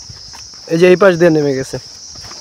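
A steady, high-pitched drone of insects in the forest, with a voice speaking briefly in the middle.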